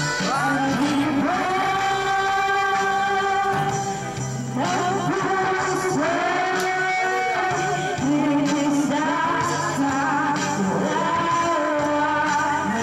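A girl singing karaoke into a handheld microphone over a karaoke backing track, with long held notes in phrases.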